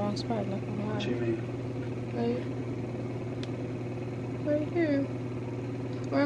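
Soft, indistinct speech in short stretches over a steady low hum.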